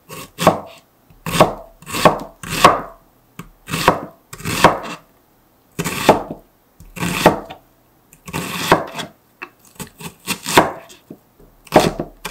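Broad cleaver-style kitchen knife chopping a red onion on a cutting board: separate knife strokes, about one or two a second. A quicker run of lighter taps comes near the end.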